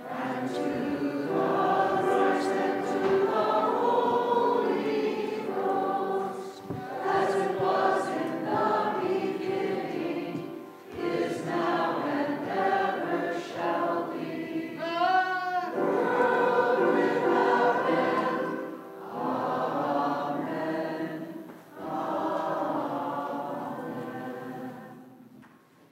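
A congregation singing a hymn together in several phrases, with short breaks between them. The last chord dies away at the end.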